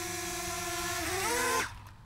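DJI Mavic Mini drone's propellers whining steadily in hover, then rising in pitch as the drone is hand-caught and flipped upside down, and cutting off abruptly near the end as the flip kills the motors.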